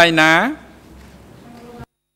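A man's voice through a courtroom microphone ends a phrase on one drawn-out syllable falling in pitch. After it comes faint steady room noise, which cuts off abruptly to complete silence near the end.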